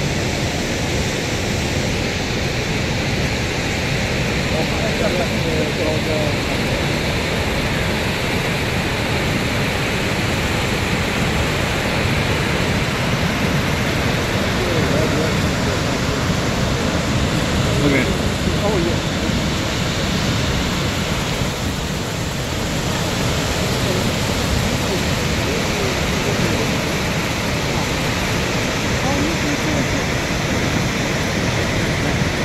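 Steady rushing noise of Niagara Falls' water, continuous and unbroken, with people's voices faintly in the background.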